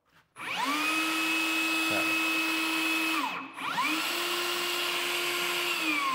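Metabo HPT cordless rebar bender/cutter running with no rebar loaded: its battery-powered motor and gearbox spin up to a steady whine as the bending disc swings round to 180 degrees. The whine stops briefly a little after three seconds in, then runs again and winds down, falling in pitch, near the end.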